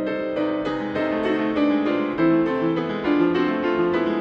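Upright piano played with both hands: a flowing stream of notes, several a second, over sustained lower chords.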